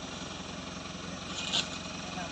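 Pickup truck engine idling steadily, with a short rustle or scrape about one and a half seconds in.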